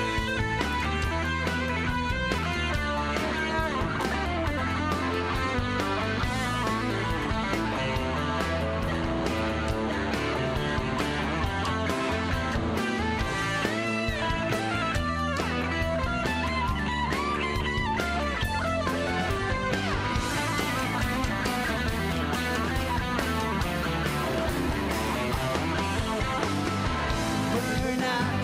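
Live rock band playing an instrumental section with no singing: a bending electric-guitar lead line over bass guitar and drums. The cymbals get brighter and louder near the end.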